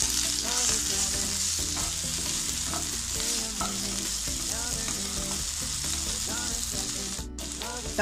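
Sliced tomatoes and onions sizzling in hot oil in a nonstick pan, a steady high hiss, while a wooden spatula stirs and scrapes them around the pan.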